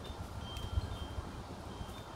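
Low wind rumble on the microphone, with a few faint, brief, high chime tones ringing over it.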